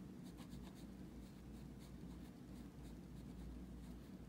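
Felt-tip marker pen writing on lined spiral-notebook paper: faint, short scratching strokes as letters are formed, thicker in the first couple of seconds.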